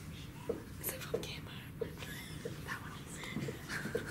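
Dry-erase marker on a whiteboard, a string of short strokes with brief squeaks about every half second and a light scratchy rasp between them.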